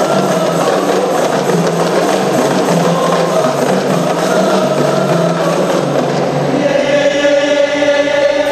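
Men's group singing a qasidah song together, with rebana frame drums in the background. Near the end the voices settle onto one long held note.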